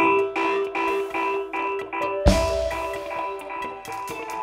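A live band plays a song intro: a repeated figure of short pitched notes, about two and a half a second. A little past halfway a heavy bass note and a loud hit come in under it.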